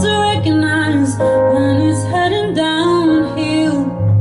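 A woman singing a slow, tender song live, with instrumental accompaniment holding low notes beneath her voice; her voice drops out just before the end while the accompaniment continues.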